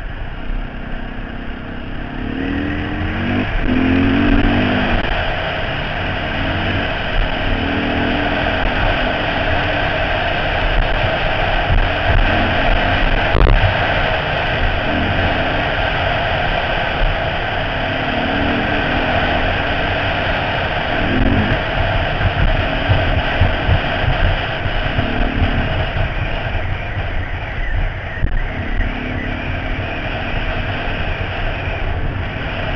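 Dirt bike engine running at speed, its note climbing and dropping again and again as the throttle opens and closes, under heavy wind rush on a helmet-mounted camera. A single sharp click about halfway through.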